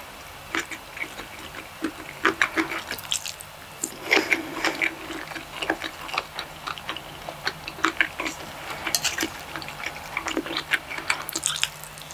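Close-miked chewing of a mouthful of fried rice and stir-fried meat: irregular wet, sticky mouth clicks and crackles with no pauses of any length.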